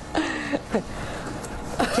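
Slot-loading optical drive of an Apple iMac ejecting a disc, a steady noise lasting about a second, after a brief voice sound near the start.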